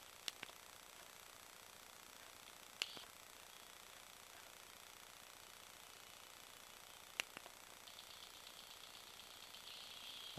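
Near silence with faint hiss, broken by three short sharp clicks spread across several seconds: the buttons of a cheap micro SD card MP3 player being pressed to skip tracks.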